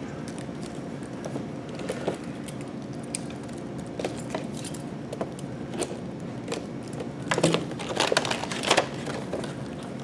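Cardboard booster boxes of plastic miniatures being handled and torn open: scattered small clicks and rustles of card, busier near the end.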